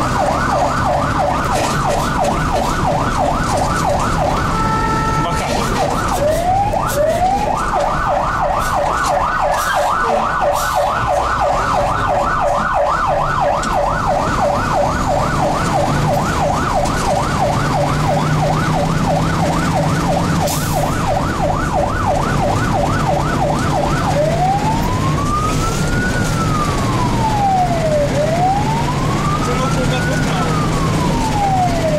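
Fire engine siren heard from inside the cab, running a fast yelp of rapid rising-and-falling sweeps, several a second, which breaks off briefly about five seconds in and restarts. About three-quarters of the way through it switches to a slow wail, rising and falling twice, over the steady hum of the truck's engine.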